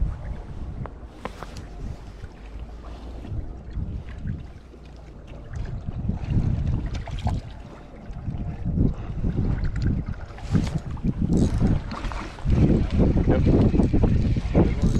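Wind buffeting the microphone on an open boat over choppy water, an uneven low rumble that grows louder in gusts near the end.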